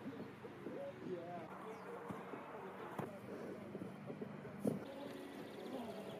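Faint outdoor background of distant, indistinct voices, with a sharp click about three seconds in and another near five seconds.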